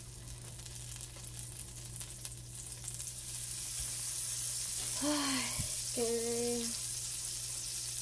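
Butter and pancake batter sizzling in a hot nonstick frying pan; the sizzle grows louder about halfway through as more butter melts in the pan. Two short hum-like tones come near the end.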